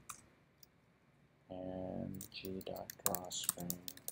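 Keystrokes on a computer keyboard: a single click near the start, then a few quick clicks in the second half, under a man's voice.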